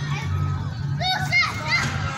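Children shouting and calling out in high voices during play, with a couple of loud calls in the second half, over a steady low background hum.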